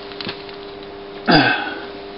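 A man's brief vocal sound about a second in, short and quickly falling in pitch, not a word, over a faint steady hum.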